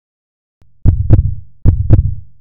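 Heartbeat sound effect of an audio logo: after silence, a faint low hum comes in and two heavy double thumps follow, the first pair just under a second in and the second about a second and a half in.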